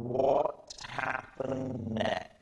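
A man's voice in three short voiced stretches, the first rising in pitch.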